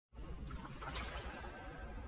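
Faint, steady outdoor background noise with a low rumble, starting just after a cut.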